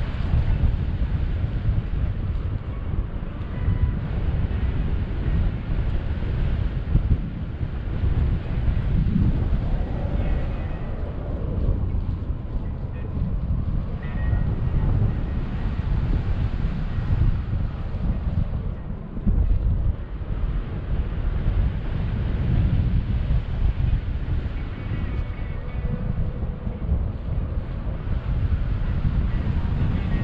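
Wind noise from the airflow over a paraglider pilot's camera microphone in flight: a low, gusty buffeting that rises and falls in level.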